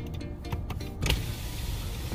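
A car's power window being lowered, starting suddenly about a second in, after which outside ambient noise fills in, over background music.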